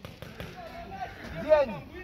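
Paintball markers firing: a run of sharp, irregular pops, with faint shouting voices behind them.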